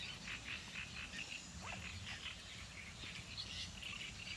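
Faint lakeside reedbed ambience: many short calls from small wildlife in the reeds, several a second, over a low steady background rumble.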